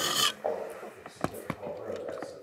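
A short rustling rub at the start, then a brief low murmur and two light clicks a little over a second in.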